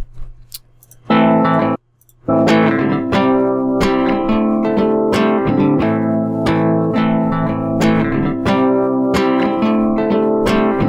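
Guitar music played back from a DAW after processing by the Antares SoundSoap noise-removal plugin with its noise reduction turned fully up. A few faint clicks come first, the music starts about a second in, breaks off briefly, then plays on with a regular pattern of plucked notes.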